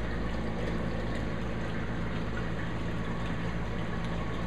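Reef aquarium equipment running: a steady low electric pump hum under the even rush of circulating water.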